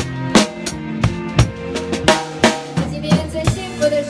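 A drum kit played live with a band and heard close from the kit: regular kick and snare strokes, about three a second, over held notes from the other instruments.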